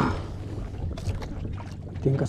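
Steady low noise of wind and sea around a small boat, with a few faint knocks.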